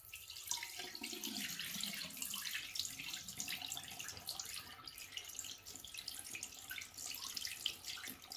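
Blue Windex cleaning solution pouring from a tipped plastic tub into a ceramic bathroom sink, a steady irregular trickle and splash with light gurgling as it runs into the basin.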